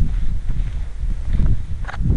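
Footsteps on the riveted steel plates of an old bridge girder, with two sharper knocks in the second half, over a steady low rumble on the microphone.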